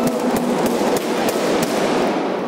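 A quick, irregular run of about eight sharp slaps and thumps from a taekwondo sparring exchange: kicks striking body protectors and feet hitting the mats, over the hum of a sports-hall crowd.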